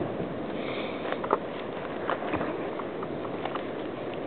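A dog panting close by, over a rustling of dry leaf litter with scattered small cracks of twigs.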